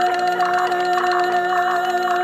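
Live electronic music from a mixer and synthesizer setup: a held drone chord sustains while a fast, even ticking percussion pattern runs over it.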